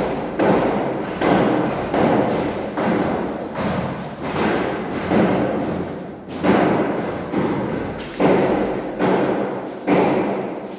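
A steady run of heavy thumps, a little over one a second, each struck sharply and then dying away.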